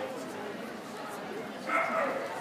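A dog's short, high-pitched cry about three-quarters of the way through, over a steady background murmur of people's voices.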